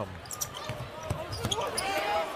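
Basketball dribbled on a hardwood arena court, a few bounces in quick succession, over a steady murmur of crowd noise and faint voices.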